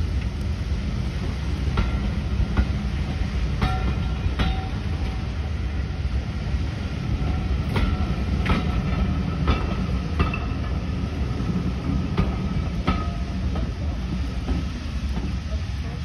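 Passenger carriages of a steam-hauled train rolling past: a steady low rumble with irregular clicks and knocks of the wheels over the rail joints, a few of them followed by brief high squeals.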